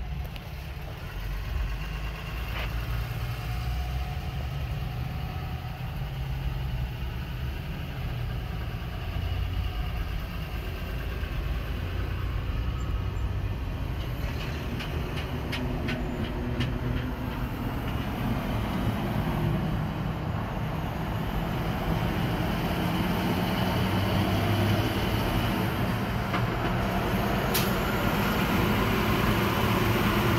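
Road and engine noise in a moving car's cabin, a steady low rumble that grows louder toward the end as a diesel semi truck runs close alongside. A short run of even ticks comes about halfway through.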